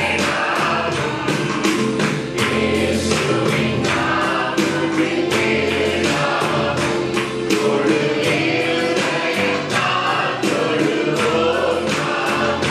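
A small group of men singing a Christian worship song together into microphones, over backing music with a steady beat.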